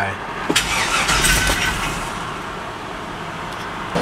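Chevrolet Silverado 2500 HD V8 cranked over with a click, catching and running for a couple of seconds, then fading as it dies. The new PCM has not yet learned the key, so the anti-theft system shuts the engine down right after it starts.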